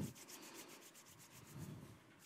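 Hands rubbing together briskly: a faint run of quick, even rubbing strokes.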